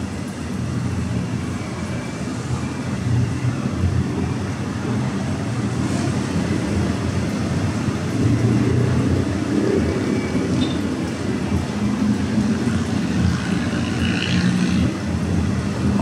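City road traffic as a steady low rumble, with no single vehicle standing out.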